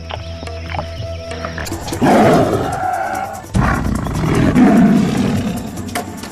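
Bengal tiger roaring twice over background music, first about two seconds in and again about a second and a half later, the second call longer.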